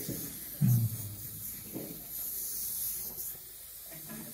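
Steady airy hiss that fades out a little after three seconds, with a short low voice sound about half a second in.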